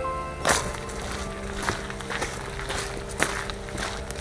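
Footsteps on a gravel path, about two steps a second, each one a short sharp crunch. Soft music dies away at the very start.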